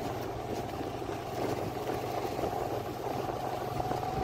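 Small two-wheeler engine running steadily while riding slowly over a paved lane, with a steady higher hum over the low engine note.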